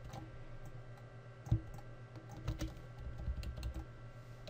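Scattered clicks and taps of a computer keyboard and mouse, with one heavier tap about one and a half seconds in and a quicker run of clicks near the end, over a steady low hum.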